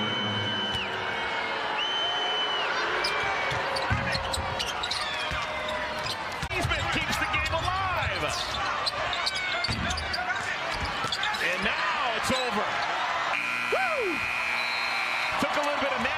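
Arena sound of a live NBA basketball game: crowd noise, sneakers squeaking on the hardwood court and the ball bouncing. Near the end the game-ending horn sounds steadily for about two seconds as the crowd cheers.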